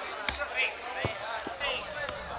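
A football being kicked: three dull thuds about half a second apart, with players' voices calling.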